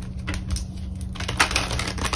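Irregular light clicks and taps, a quick cluster of them with one sharper tap about a second and a half in, over a steady low hum.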